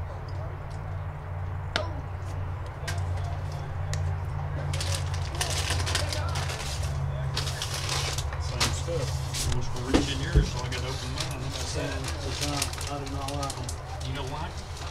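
Indistinct talk of spectators over a low steady rumble, with a single sharp pop about two seconds in as a pitch lands in the catcher's mitt, and two dull thumps later on.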